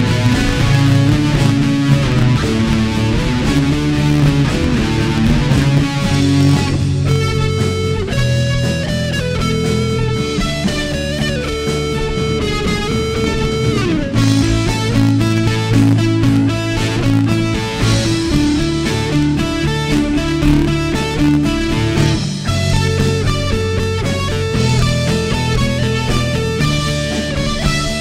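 A live worship band playing an instrumental passage: electric and acoustic guitars over bass and drums, with no singing.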